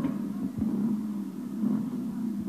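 Two-stroke Gas Gas trial motorcycle engine running at low revs, with a few dull knocks, as the bike is held balanced on an obstacle. It is heard through an old television broadcast.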